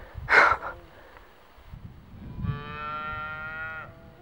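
A cat meowing: one long, drawn-out, steady-pitched call of about a second and a half in the second half, calling after people walking away from it. Just after the start comes a short, loud, breathy burst of a person's voice.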